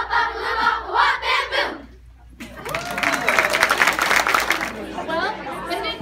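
A loud burst of children's voices together ends the choir's song. About two seconds in, the audience breaks into applause and cheers, which fade into crowd chatter.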